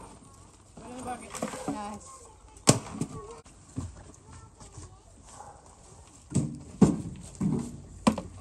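A small plastic shovel scraping and knocking into dry leaves and dirt, with leaves rustling; the sharpest knocks come a little under 3 s in and near the end. A child's voice sounds briefly about a second in.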